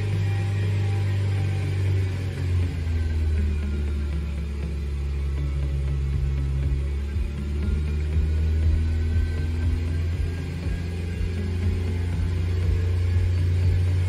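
A Nissan's engine running at raised revs, held at about 2,500 rpm, as a steady low drone whose pitch drifts slightly up and down with the revs.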